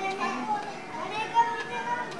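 Children's voices chattering and calling out, several at once.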